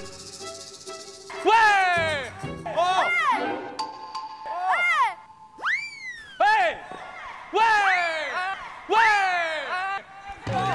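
A run of about eight short comic sound effects, each sweeping quickly up in pitch and then sliding down like a cartoon boing or whoop, with a brief steady ding-like tone in the middle.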